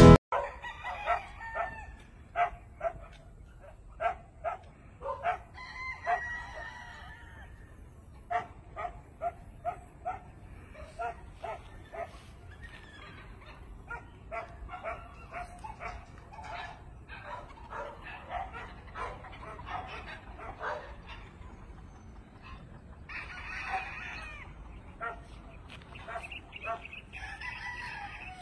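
Gamefowl roosters and hens calling: a steady run of short clucks and calls, with longer crows about six seconds in and again near the end.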